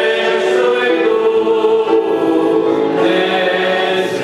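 A man singing a Christian song, holding long notes.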